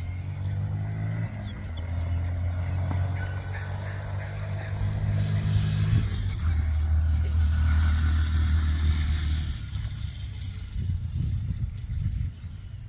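Honda Monkey's single-cylinder engine running as the small motorcycle is ridden across a field. The engine note steps in pitch a few times, is loudest in the middle and drops off near the end.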